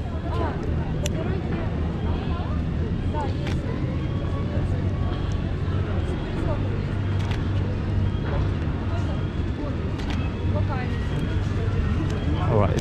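Busy outdoor city ambience: a steady low rumble with people talking in the background and a few sharp clicks scattered through it.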